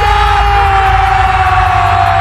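A match commentator's long drawn-out goal call, one held shout that sinks slightly in pitch, over the noise of a stadium crowd.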